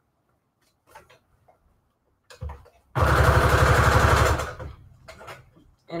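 Electric sewing machine sewing a short straight-stitch seam through paper: about a second and a half of fast, even stitching starting about three seconds in, then slowing to a stop. A couple of light clicks come before it.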